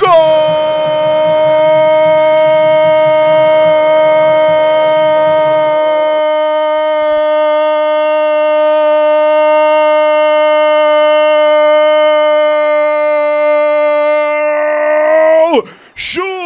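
A radio football commentator's goal call: one long "gooool" shouted on a single steady pitch for about fifteen seconds, dropping in pitch as his breath runs out near the end.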